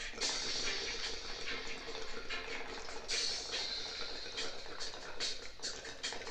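Water bubbling continuously in a water bong as smoke is drawn through it while the bowl is lit.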